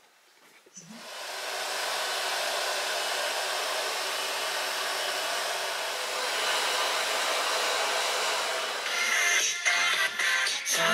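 Hand-held hair dryer blowing steadily on hair, switching on about a second in. Music takes over near the end.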